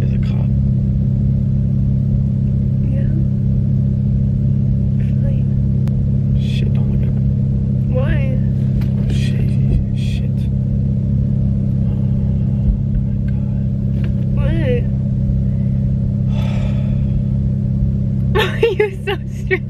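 Steady low rumble of a car's running engine heard inside the cabin, with a few brief, faint vocal sounds over it.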